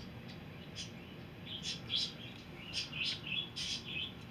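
A bird chirping: a quick, irregular run of short high chirps that starts about a second in and gets busier toward the end.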